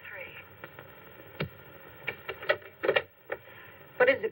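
A voice coming thin and boxy through a small desk intercom speaker, finishing a phrase at the start and followed by a few short, broken sounds.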